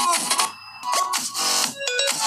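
Electronic music played through a smartphone's built-in loudspeaker, first the Poco F2 Pro, then after a short gap about half a second in, the Huawei P40 Pro.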